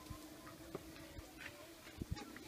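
A few faint clicks and knocks of a spoon against a pot as thick maize porridge (chima) is stirred over a wood fire.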